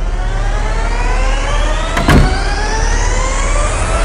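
Dramatic background score: a rising pitch sweep climbing steadily over a low drone, with one sharp hit about halfway through.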